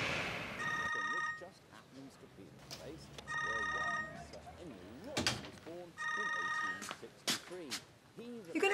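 A phone ringing: three short trilling rings, each just under a second long, about every two and a half to three seconds.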